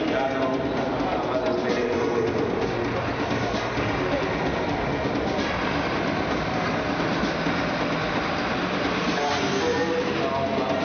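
Coach bus's diesel engine running steadily as it manoeuvres, with indistinct voices around it.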